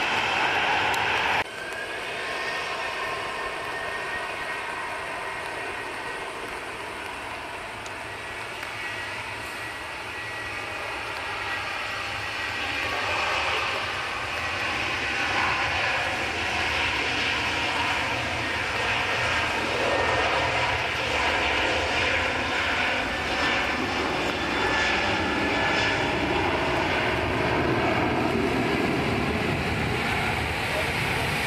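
Jet engines of a Boeing 737-800 (CFM56-7B turbofans) at takeoff power: a continuous engine noise with whining tones that grows louder from about halfway through as the jet accelerates past. The sound drops abruptly to a quieter level about a second and a half in.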